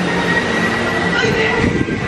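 Dumbo the Flying Elephant ride running as the car circles the hub: a steady mechanical rumble and rush with a faint, steady high whine.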